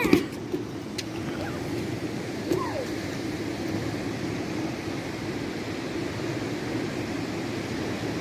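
Steady rushing outdoor background noise, with short voiced calls from a child right at the start and again about two and a half seconds in.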